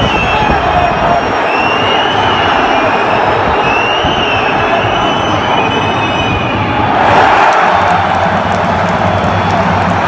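Large football stadium crowd, loud throughout: massed shouting with high whistles cutting through, swelling to a louder roar about seven seconds in.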